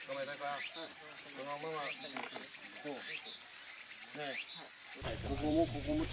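People talking in low voices, with a high rising call repeating four times, roughly every 1.3 seconds, in the background.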